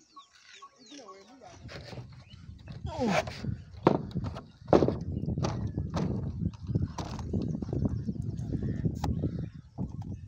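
Voices talking, over a low rumble that sets in about a second and a half in, with a few sharp knocks.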